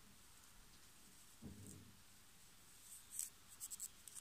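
Faint scratching and snipping of fine metal scissors and tweezers working through the silk of a tarantula egg sac, with a quick run of small clicks a little past three seconds in.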